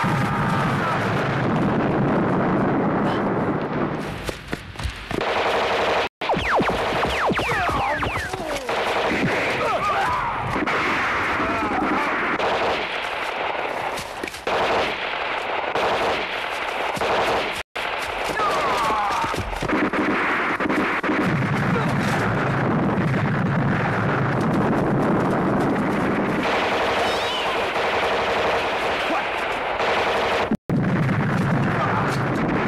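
Sustained battle gunfire from a film soundtrack: rapid machine-gun bursts mixed with rifle and pistol shots, loud and dense almost throughout. It cuts out for an instant twice, about six and eighteen seconds in.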